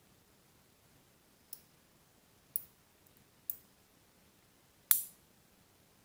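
Small magnetic balls snapping together: four separate sharp clicks about a second apart, the last one the loudest.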